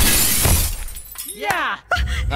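Film fight sound effect of glass shattering with a heavy crash as a man hits the floor, a thud about half a second in, the breaking noise dying away within the first second.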